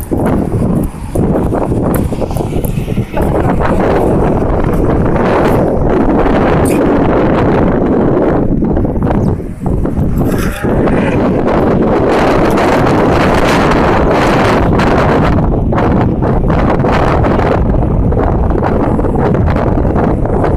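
Loud, steady wind noise buffeting the phone's microphone while moving along a road, dropping briefly a few times.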